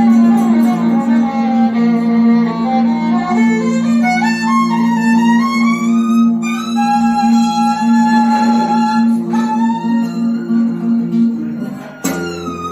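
Live fiddle and acoustic guitar playing an instrumental passage over a steady held low note. The fiddle melody slides upward and then holds a long high note midway, and the playing dips briefly in loudness just before the end.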